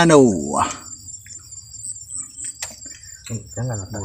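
Insects chirring steadily in a high-pitched band, with a light click about two and a half seconds in.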